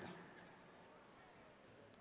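Near silence: faint room tone, with the tail of the announcer's voice dying away at the very start.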